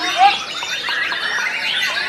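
White-rumped shamas (murai batu) singing together in competition cages: a dense overlap of many whistles and chirps, rising and falling.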